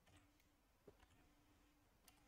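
Near silence, with a few faint computer keyboard clicks as a short word is typed.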